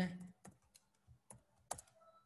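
A few separate keystrokes on a computer keyboard, tapped one by one with short gaps, two close together near the end.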